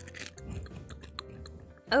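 Chewing on a dried edible cricket: a run of small, crisp crunches and clicks.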